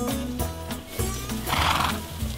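A horse neighing once, briefly, about one and a half seconds in, over guitar music.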